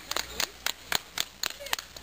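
Hand clapping in a steady, even rhythm, about four claps a second.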